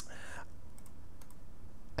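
A single sharp computer click right at the start, as when operating the software with mouse or keyboard, followed by a short hiss of about half a second, then low steady background hiss.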